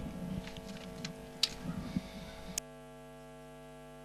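Steady electrical mains hum under faint background noise with a few soft clicks; about two-thirds of the way through the background noise cuts off suddenly, leaving only the hum.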